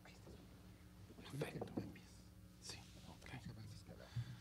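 Faint whispered, off-microphone speech in a few brief snatches, over a low steady electrical hum.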